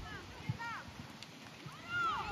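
Distant high-pitched shouts of players across a football pitch: a short call about half a second in and another near the end.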